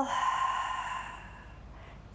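A woman's long, audible out-breath, a breathy hiss that fades away over about a second and a half: a deliberate Pilates exhale.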